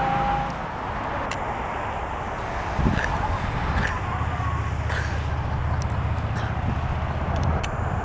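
Steady road-vehicle noise, a low rumble of a car in motion or passing traffic, with a few faint ticks.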